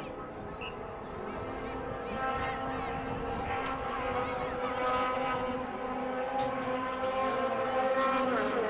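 A motor engine's steady drone at one unchanging pitch, growing louder from about two seconds in, with faint distant voices.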